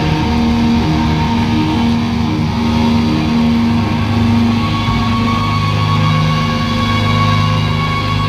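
Live rock band playing loud, guitar-driven music on electric guitar, bass and drums, with a high held note coming in about halfway through.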